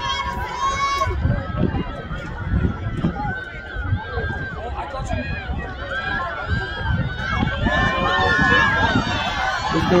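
Spectators cheering and shouting encouragement, many voices calling over one another, getting louder near the end.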